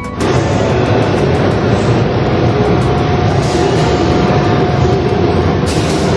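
Loud, steady rushing background noise with a faint held tone, the ambience of an indoor showroom picked up by a phone microphone.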